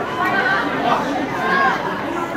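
Spectators' voices talking and calling out over one another, a steady crowd chatter.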